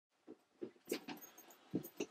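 Faint footsteps of a person walking into a small room: about five soft, uneven steps, getting a little louder towards the end.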